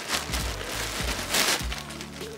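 Plastic courier bag crinkling and rustling as it is pulled open and a plastic-wrapped jacket is drawn out, loudest about a second and a half in, over background music.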